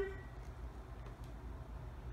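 Quiet room tone: a low, steady hum, with the tail of a drawn-out spoken word fading out at the very start.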